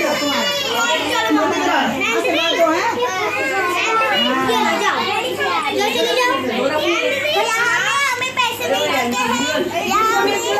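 Many children talking and calling out at once, their high voices overlapping into a continuous chatter.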